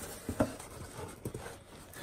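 Light knocks and taps from handling a cardboard box and its packed contents, the sharpest knock about half a second in.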